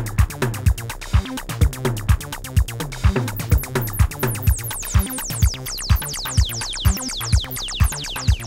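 Electronic dance music from a drum machine and synthesizer: a steady kick about twice a second under fast hi-hat ticks. From about three seconds in, a run of quick high falling synth zaps comes in over the beat.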